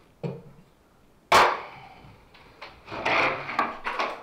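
A plywood board being handled: a light knock, then a loud sharp wooden bang about a second and a half in, followed by a run of scraping and knocking near the end.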